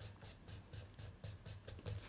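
Felt-tip marker scratching on paper in quick back-and-forth colouring strokes, faint and even, about four strokes a second.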